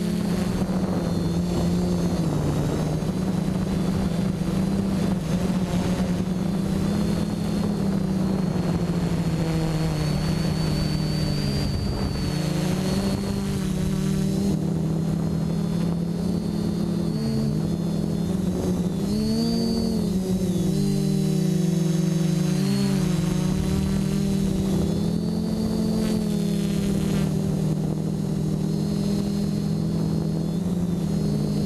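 Quadcopter's electric motors and propellers heard from the camera on board, a steady multi-tone whine whose pitch dips and rises with throttle changes, most between about 17 and 23 seconds in.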